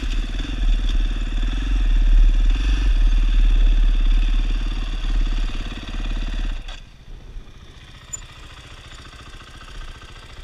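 Husqvarna dirt bike engine running under throttle, heard from on board the bike; about seven seconds in the throttle closes and the engine drops to a low idle as the bike rolls to a stop.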